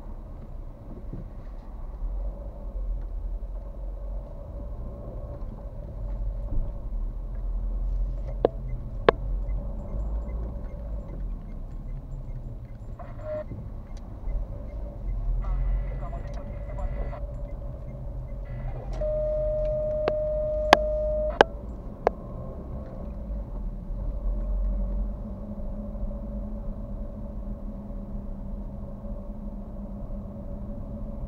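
Car driving slowly in town traffic, heard from inside the cabin: a steady low engine and tyre rumble. There are a few sharp clicks, and a steady tone lasts about two seconds about two-thirds of the way through.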